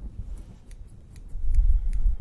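Grooming scissors snipping a poodle's tail hair: a run of short, light snips. A loud low rumble comes in over the second half.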